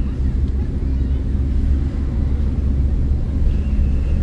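Car cabin noise while driving: a steady low rumble of engine and tyres on the road, heard from inside the car.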